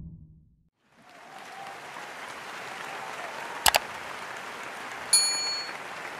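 Subscribe-button end-screen sound effects: a quick double click about 3.7 s in, then a bright notification-bell ding about 5 s in. Both play over a steady wash of applause that starts about a second in.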